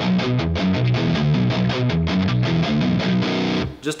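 Ernie Ball Music Man JP15 seven-string electric guitar through a high-gain Fractal Axe-FX III amp model, playing a fast sixteenth-note riff of open-string pull-offs. The picking hand palm-mutes the strings to shorten their ring and tighten the distorted tone. The riff stops short near the end.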